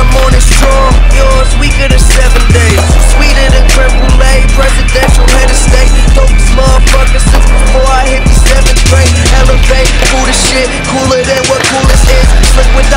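Hip-hop backing track with heavy bass playing through, with a skateboard rolling on concrete and its board clacking as tricks are popped and landed.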